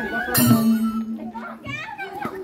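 Madal hand drums played, one hit about half a second in ringing on at a steady pitch, with voices and children's chatter over them.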